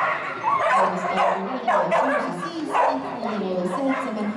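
A dog barking and yipping repeatedly over continuous crowd chatter.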